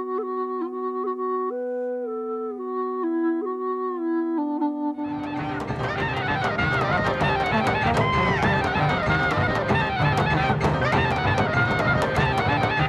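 Solo hulusi (Chinese gourd flute) playing a stepping melody over the steady note of its drone pipe. About five seconds in it cuts abruptly to a full band playing louder, dense clarinet-led music with bass and percussion.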